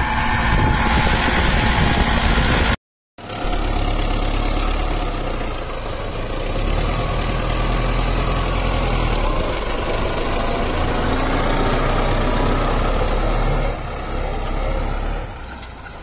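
MTZ (Belarus) tractor's diesel engine running steadily while it pulls a harrow across the field. The sound drops out briefly about three seconds in and falls lower near the end.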